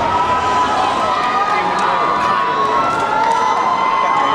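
A large crowd cheering and screaming steadily, with many high voices held at once over a general hubbub.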